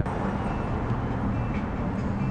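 Steady traffic noise with a low vehicle hum.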